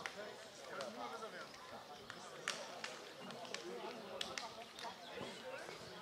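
Indistinct voices of men talking at a distance, with scattered short sharp clicks.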